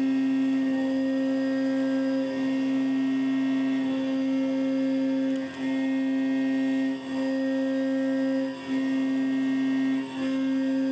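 CNC mill end mill cutting an aluminum block: a steady humming tone with overtones that dips briefly about every second and a half.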